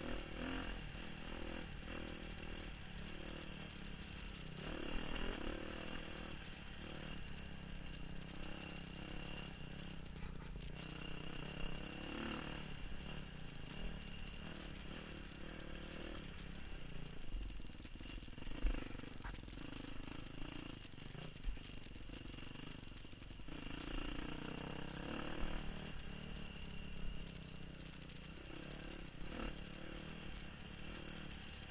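Dirt bike engine running while being ridden along a rough trail, revving up and down with the throttle, with a few sharp knocks from the bumps.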